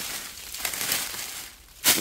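Dry fallen leaves crunching and rustling underfoot as someone walks through leaf litter, with a short louder burst just before the end.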